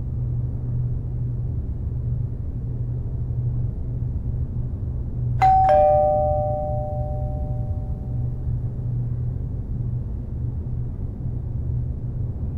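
A two-tone doorbell chime rings once about halfway through: a higher ding, then a lower dong, both ringing out and fading over a few seconds. A steady low hum runs underneath.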